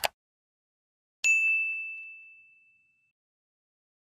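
Subscribe-button animation sound effect: a short click at the start, then about a second later a single bright bell ding that rings out and fades over nearly two seconds.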